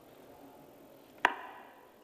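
A single sharp click about a second in, with a brief ring after it, over faint steady room noise.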